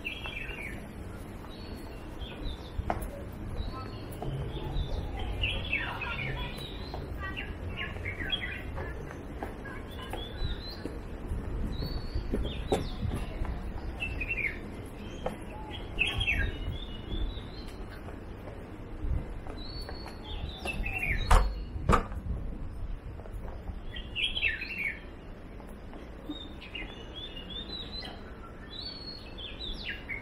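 Small birds chirping in short clusters of quick falling notes every few seconds, over steady outdoor background noise. Two sharp clicks stand out about two-thirds of the way through.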